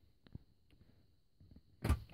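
Faint clicks and light handling noise of a paper clip being worked into a two-pin diagnostic connector in a wiring harness, with a short thump near the end.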